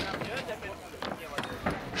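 Stunt scooter rolling on concrete, with a couple of light clacks about a second and a half in, under faint background chatter of people.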